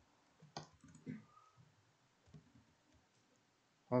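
A single sharp click at a computer desk about half a second in, then a few faint, softer handling noises, all at a low level.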